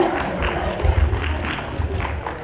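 Audience noise in a large hall: scattered claps and crowd chatter, with a few low thumps.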